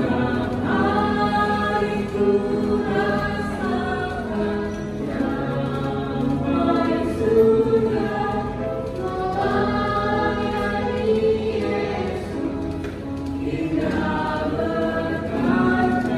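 A small family group of mixed voices (women, girls and a man) singing a praise song together in long held notes, amplified through handheld microphones and the church loudspeakers.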